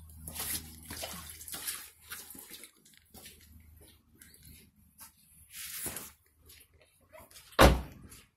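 Scattered rustling and shuffling of someone moving around a car with its doors open, then a car door shut with a single loud thump near the end.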